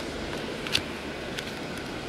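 Steady background hiss with a soft click about three quarters of a second in, as trading cards are shuffled by hand.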